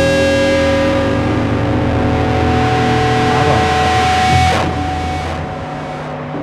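Rock music: a distorted electric guitar chord held and ringing out, fading from about four and a half seconds in.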